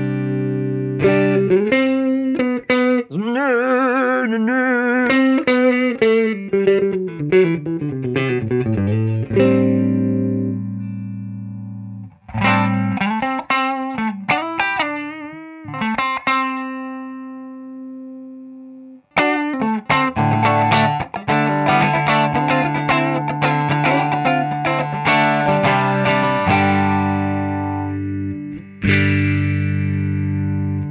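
Ibanez electric guitar played through a Boss EQ-200 graphic equalizer pedal: chords and single-note lines, with wavering bent notes about three to five seconds in and short breaks around twelve and nineteen seconds. The EQ is shaping the tone to sound more acoustic.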